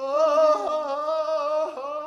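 A voice singing long, drawn-out notes with a wavering vibrato, the pitch gliding between notes a couple of times.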